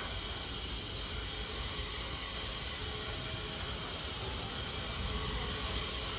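Steady background hiss with a low rumble underneath and no distinct events.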